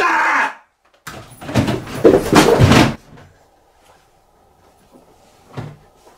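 A man's loud shout that breaks off half a second in, then about two seconds of loud, noisy commotion, then a single sharp thump near the end.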